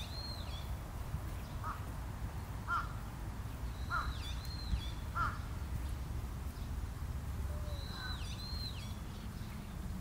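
Wild birds calling from the trees: pairs of high whistled notes that dip in pitch, coming about every four seconds, with short, lower calls several times in between, over a steady low rumble.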